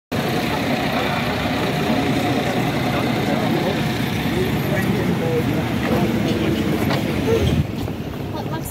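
Busy city street sound: steady road traffic under many people talking around the microphone. It eases off a little near the end.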